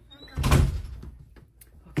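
A single heavy thump about half a second in as a metal cash box is set down on the desk, followed by a couple of small clicks from handling it near the end.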